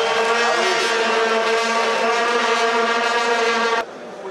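A horn blown in one long, loud, steady note that cuts off suddenly near the end.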